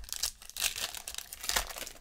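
Trading-card pack wrapper crinkling and tearing as it is ripped open by hand, in a quick run of irregular crackles.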